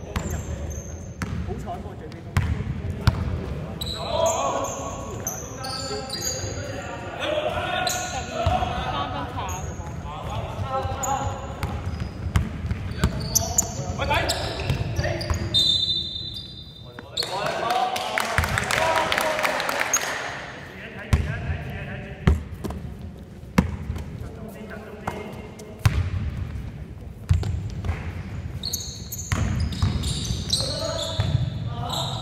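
Basketball bouncing on a hardwood court, with repeated thuds of dribbling and passes through the stretch, ringing in a large sports hall. Players' voices call out in the middle of the stretch.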